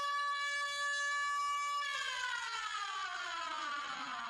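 A steady, buzzy electronic tone that, about two seconds in, starts sliding slowly and evenly down in pitch.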